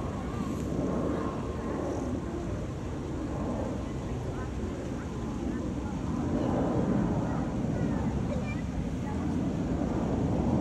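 Indistinct voices of people talking over a steady outdoor rumble.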